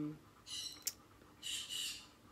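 Pet birds calling in the background: two short, high-pitched calls about a second apart, the first ending in a sharp click.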